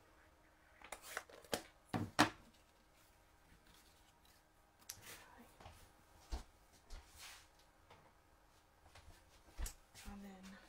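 Cardstock pieces being handled and set down on a craft mat: light paper rustles and scattered small taps, with a quick run of sharper clicks about a second to two in and a few more later.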